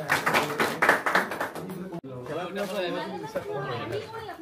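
A small group clapping for about two seconds. The applause cuts off abruptly and gives way to several men talking over one another.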